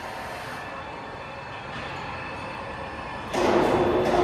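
Rotary charcoal carbonization furnace and its screw-conveyor drive motors running: a steady mechanical hum with faint steady tones. It gets suddenly louder a little over three seconds in.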